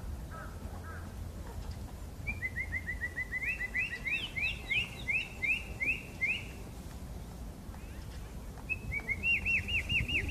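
Blackbird singing: a fast run of short clear notes, then a series of louder, slower down-slurred whistles, and another quick run of notes near the end.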